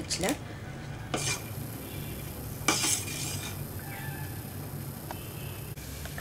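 A ladle stirring and scooping thick tomato ketchup in a steel pot, with two short scrapes or clinks against the pot, the second about three seconds in and the louder of the two, over a steady low hum.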